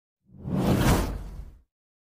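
A whoosh sound effect for an animated title banner sliding in. It swells up about a quarter of a second in and fades out by about a second and a half.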